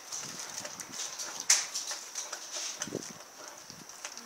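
A rottweiler gnawing and chewing on a whole raw pork shoulder, irregular clicks and crunches of teeth working the meat and skin, the sharpest about a second and a half in.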